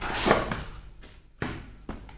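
Cardboard drone packaging box being handled: a rustling scrape in the first half second, then two light knocks, about a second and a half and two seconds in.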